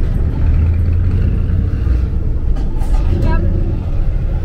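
Diesel engine of a MAN KAT 4x4 truck running at low speed, a steady low drone heard from inside the cab.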